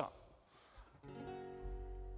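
Acoustic-electric guitar: after a moment of quiet, a chord is strummed about a second in and left ringing.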